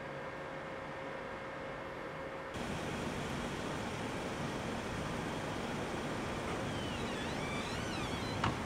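Steady early-morning city street ambience, a low hum of distant traffic, becoming a little louder and brighter about two and a half seconds in. A few faint high gliding whistles come near the end.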